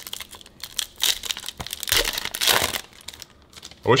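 Foil wrapper of a trading-card pack being torn and crinkled by hand: a short crinkle about a second in, then a longer one around two to three seconds in.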